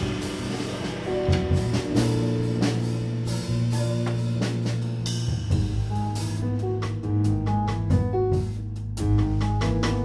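Live jazz trio playing: an electric bass holding low notes, a Gretsch drum kit keeping time with cymbals and drums, and a Yamaha Motif XS8 keyboard adding chords and short melodic notes. The cymbals thin out for a few seconds past the middle and come back near the end.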